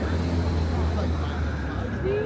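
A car passing close by on the street, its low engine and road rumble fading away near the end, with passersby talking.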